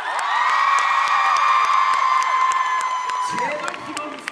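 Concert audience cheering and screaming: many high voices rise together, are held for about three seconds and then die away.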